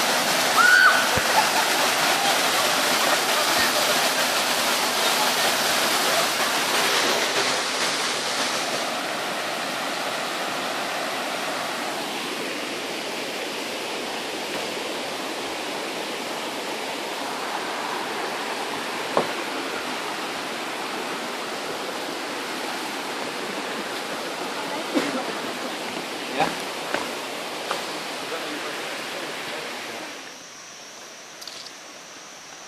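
A waterfall's white water rushing over rocks. It is loud at first and fades over the first dozen seconds to a lower, steady rush, with a few scattered knocks in the later part.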